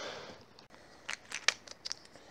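Handling noise close to the microphone: a short rustle, then a quick run of sharp clicks and crackles from about a second in, the loudest about halfway through.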